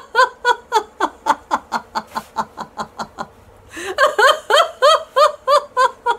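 A woman laughing heartily in a laughter-yoga exercise: a quick run of rhythmic "ha-ha-ha" pulses, about five a second, that trails off, a brief pause about three seconds in, then a second loud run of laughter.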